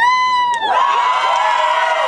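A woman's long, held shout, then a group of people joining in with loud cheering about half a second in.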